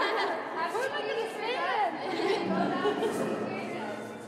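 A group of people chattering and calling out at once in a large hall, with a high voice swooping up and down about one and a half seconds in.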